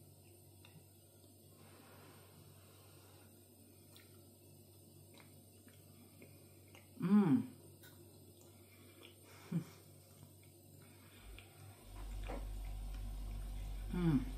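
A woman eating a spoonful of rice pudding, mostly quiet, with one pleased 'mmm' of appreciation about seven seconds in and a short mouth sound a couple of seconds later. A low steady hum comes in about twelve seconds in.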